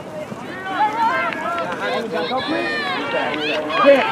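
Several distant voices shouting and calling over one another, with no single close voice.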